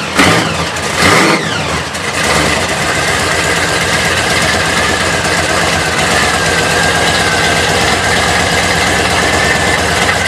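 Supercharged V8 in a 1970s Chevrolet Caprice donk blipped hard about a second in, then settling into a steady idle with a thin, steady high whine over the engine note.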